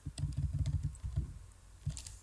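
Computer keyboard keys clicking in a quick, uneven run through the first second or so, then a single click near the end.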